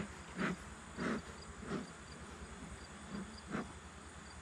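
Bee smoker's bellows being squeezed, giving short breathy puffs of air: three in quick succession about two-thirds of a second apart, then a fourth after a pause of nearly two seconds.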